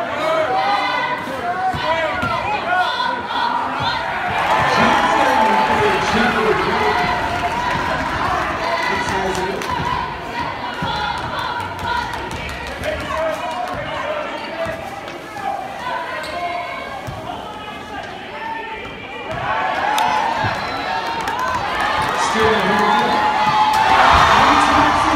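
Basketball dribbling on a gym's hardwood floor under the chatter and shouts of a crowd in the bleachers. The crowd noise swells into cheering near the end as a player goes up at the basket.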